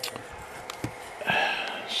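Light handling noise from a CB radio being turned over in the hand: a click at the start and a few faint ticks. A brief voice-like sound follows near the end.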